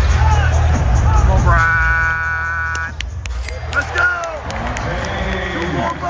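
Arena music with a heavy bass beat that drops back about halfway through, over crowd noise and shouting voices. A held, pitched note sounds for about a second in the middle.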